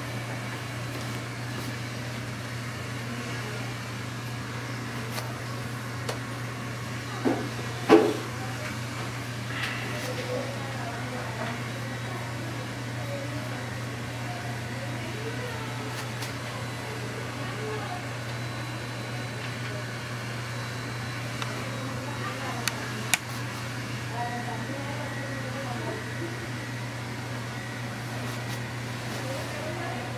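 Steady low electrical or fan hum in a small room, with faint background voices and a few short sharp clicks, the loudest about eight seconds in.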